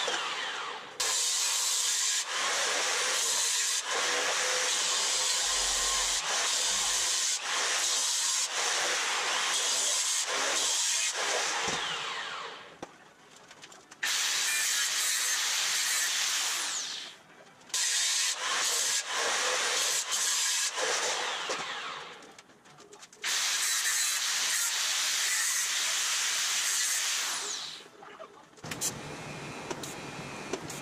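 Angle grinder grinding on a steel frame rail in several long runs, its pitch falling as it winds down between runs. Near the end the grinding gives way to a quieter, steady welding arc with light crackling.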